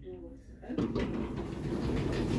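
Stannah passenger lift's sliding landing doors opening: a steady mechanical rumble with rattle that starts about three-quarters of a second in and grows.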